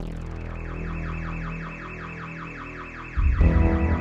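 Album opener: a rapid, evenly repeating synthesizer pattern of falling sweeps starts suddenly. About three seconds in, the band comes in much louder with heavy bass.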